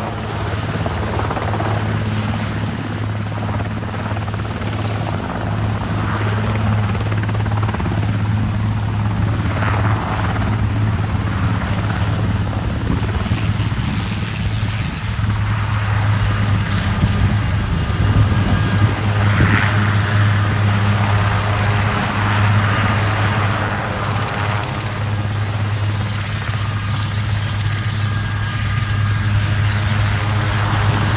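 Large twin-turbine helicopter with its rotor at flight speed, hovering low and then on its wheels moving closer: a steady low rotor drone with engine noise, growing slightly louder.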